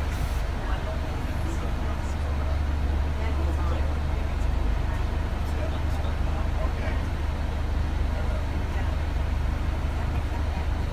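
Steady low engine rumble of a London double-decker bus, heard from inside on the upper deck as the bus moves slowly through traffic, with indistinct voices in the background.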